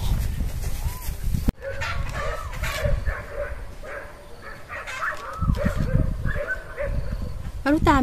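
Low wind rumble on the microphone, cut off suddenly about a second and a half in, followed by faint wavering calls of farm animals in the background.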